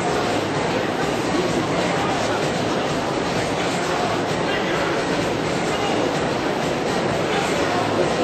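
Steady babble of many voices talking at once in a large, busy indoor hall, with no single voice standing out.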